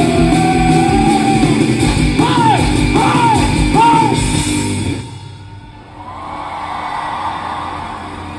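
Live rock band with drums, guitar and a singer playing the last bars of a song, the voice giving three short rising-and-falling calls. The band stops suddenly about five seconds in, and the crowd cheers.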